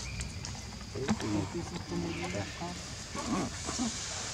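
Macaques making short, pitch-bending calls among low voices of people.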